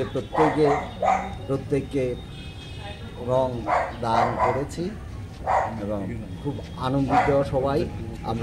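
A man talking in Bengali, in short phrases with pauses between them.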